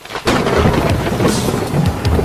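Thunder sound effect: a sudden loud thunderclap breaking in just after a moment of silence, then heavy rumbling, with music underneath.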